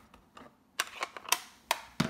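A few sharp plastic clicks and taps, four louder ones in quick succession in the second half, from a Stampin' Up ink pad case being handled and snapped shut.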